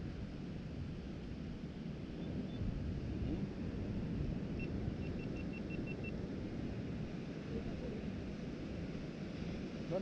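Steady low rush of surf and wind on a rocky sea shore. About five seconds in comes a quick run of faint, high, evenly spaced beeps.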